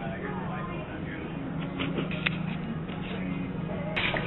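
Store ambience: indistinct voices over a steady low hum, with a few light knocks about two seconds in.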